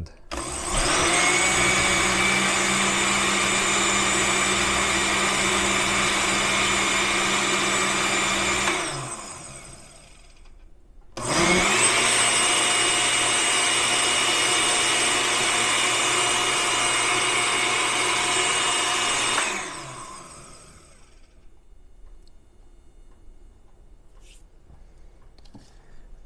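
Oster countertop blender running on a mix/blend setting, whipping milk and sweetened condensed milk. It gives two steady runs of about eight seconds each with a short pause between, and each ends with the motor winding down.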